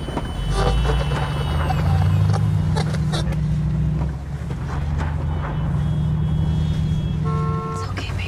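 Car engine and road rumble heard from inside the cabin of a moving car, low and steady, with scattered small clicks and a brief pitched tone near the end.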